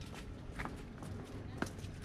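Footsteps on stone paving while walking: a few sharp steps over faint background noise.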